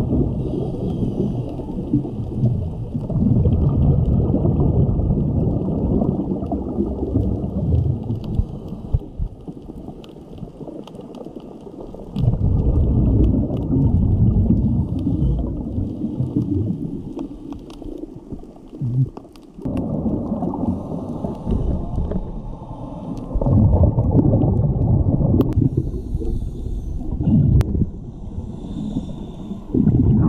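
Underwater bubble rumble from scuba regulator exhalations, heard through an underwater camera housing. It comes in long surges with a couple of quieter lulls.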